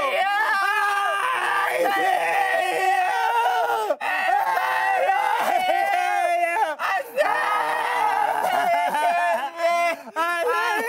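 Two men yelling and wailing over each other, one in a loud sobbing cry. The strained cries run almost without a break, with short pauses near the middle.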